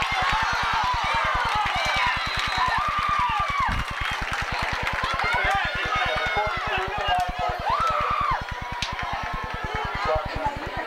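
Spectators at a high school football game shouting and calling out, many voices overlapping, over a steady rapid low buzzing pulse.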